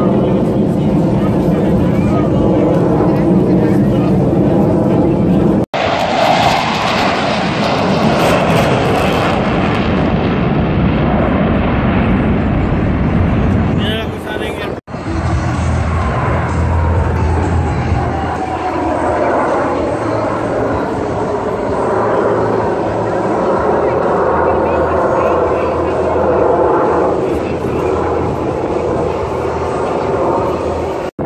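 Formation of military jets flying over, their engines loud and steady, with a slowly falling pitch as they pass about halfway through. The sound cuts out for an instant twice where the recording jumps.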